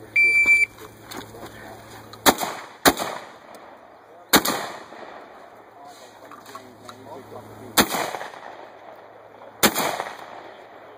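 A shot timer's steady high beep sounds right at the start for about half a second, signalling the start of the run. Then come five shotgun shots at uneven spacing: two about half a second apart around two seconds in, then single shots spread over the rest. Each shot trails off in an echo.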